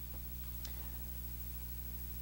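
Low steady electrical hum, with two faint clicks in the first second.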